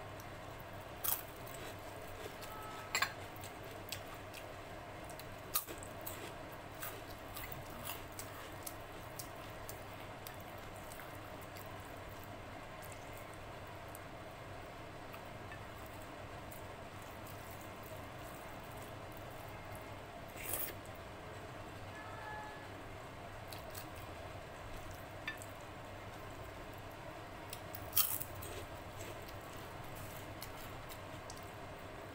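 Close-up wet eating sounds: rice and kadhi pakora squished and mixed by hand on a plate, with soft squelches and scattered sharp mouth clicks and smacks of chewing, a few of them louder.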